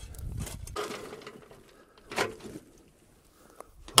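Shovel scraping and tossing loose clay dirt, with wind rumble on the microphone in the first second and one louder short sound about two seconds in.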